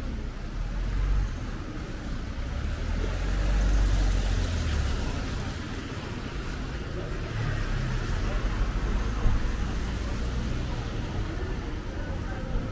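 Street traffic: cars passing on a wet road, a low engine rumble swelling about a second in and most strongly between about three and five seconds, over a steady hiss of tyres and city noise.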